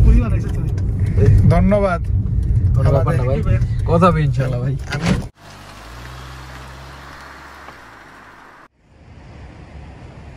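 A man's voice laughing and talking over the low road rumble inside a moving car's cabin. About five seconds in this cuts off suddenly to a car engine idling as a steady low hum. There is a short gap near the end, then faint street noise.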